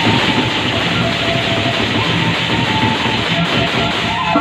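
Sasak gamelan ensemble playing, led by many pairs of hand-held cymbals clashing together in a dense, continuous wash. A few steady pitched notes of the ensemble sound beneath the cymbals.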